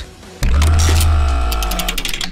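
News-bulletin transition sound effect for a numbered story card: a sudden deep bass hit about half a second in, held as a low tone with a steady pitched layer that slowly fades, and a run of quick clicks near the end.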